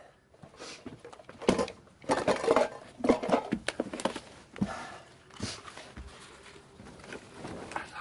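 Radio-drama sound effects of a man stretching out on a bunk: irregular rustling, creaks and soft knocks.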